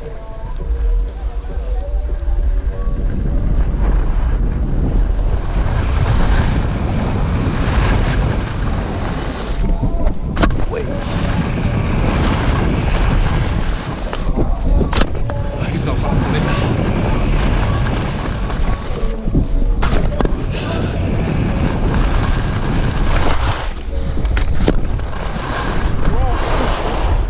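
Wind buffeting an action camera's microphone with the hiss and scrape of skis running over packed snow while skiing downhill, broken by a few sharp knocks about ten and fifteen seconds in.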